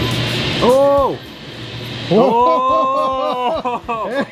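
A man's voice making wordless drawn-out sounds, a short one about a second in and a longer wavering one near the middle, as the background music stops.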